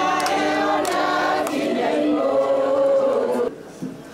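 A group of women singing together as a choir, a hymn sung by many voices at once; the singing cuts off suddenly about three and a half seconds in.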